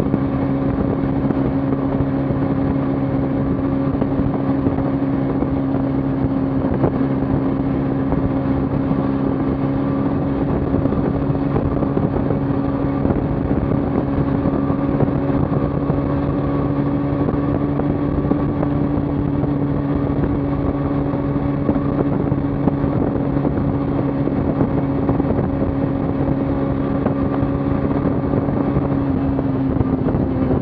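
Kawasaki Ninja 300's parallel-twin engine running at a steady cruising speed on the highway, holding one even pitch throughout.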